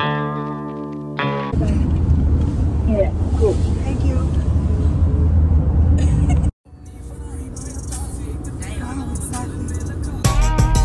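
A held musical chord for about a second and a half, then steady road noise inside a moving car's cabin, a low rumble. It cuts off suddenly about six and a half seconds in and comes back quieter, slowly building.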